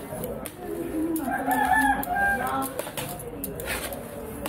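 A rooster crowing once, starting about a second in and lasting about a second and a half, the loudest sound here. Underneath, a metal ladle scrapes and clacks against a large aluminium pot as rice is stirred.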